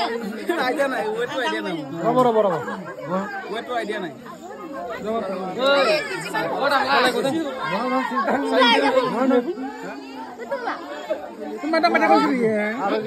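People talking over one another in a group: chatter throughout.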